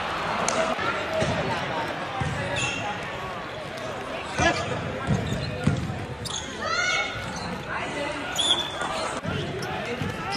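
Indoor basketball game: a ball bouncing on the hardwood-style court floor, sharp sneaker squeaks about six to seven seconds in and again near the end, and players' voices, all echoing in a large gym hall.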